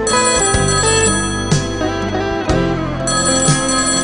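Slow ballad backing music with a beat about once a second, and a telephone ringing over it twice: once at the start and again about three seconds in.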